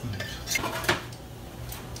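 A metal spoon clinking against the butter jar and cast iron skillet as clarified butter is spooned in, with two sharp clinks about half a second and a second in.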